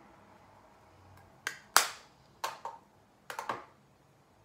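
Six sharp clicks in three close pairs, about a second apart, from makeup things being handled, such as a brush or compact being tapped or set down.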